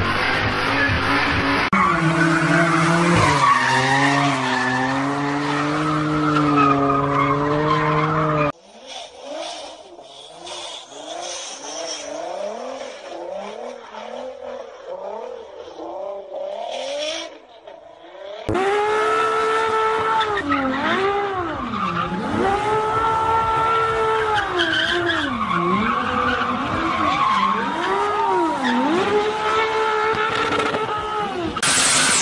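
Car engines and tyres across three cut-together clips. First, a BMW 6 Series coupe does a burnout, its engine held at a steady high pitch while the rear tyres spin and squeal. About eight seconds in, a quieter car sliding on snow takes over, its engine pitch climbing over and over; near the halfway mark, a loud engine is revved hard, its pitch repeatedly dipping and climbing again.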